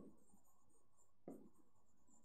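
Near silence, with a single faint tap about a second in: a stylus writing on a pen-display screen.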